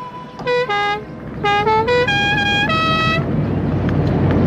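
A musical car horn playing a short tune of about seven notes: two notes, a pause, then a quick run of five that ends on two longer held notes. Under it the car's engine and road noise grow louder as it passes.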